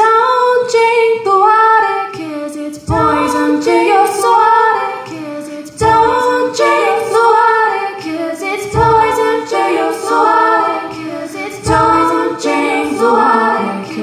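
Layered a cappella female vocals built up on a loop pedal: several repeating sung harmony lines stacked over one another, with a low thump recurring about every three seconds.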